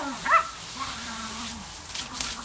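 Small terriers yipping at water spraying from a garden hose. There are a couple of high, rising-and-falling yips in the first half-second, then a lower drawn-out dog sound, over a faint hiss of spray.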